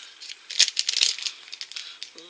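Crinkling and crackling of a plastic blind-bag wrapper handled in the hands, with small clicks, heaviest about half a second to a second in, as a tiny diecast toy car is taken out.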